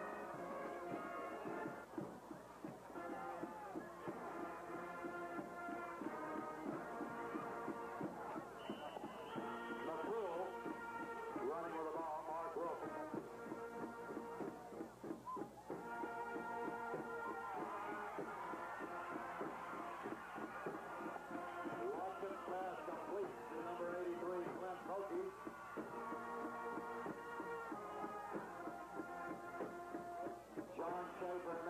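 A band playing music in long held chords, in phrases that break off briefly every few seconds, with crowd voices underneath.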